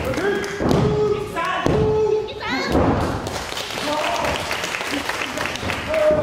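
A referee's hand slapping the wrestling ring canvas for a pin count, three thuds about a second apart, with crowd voices shouting along.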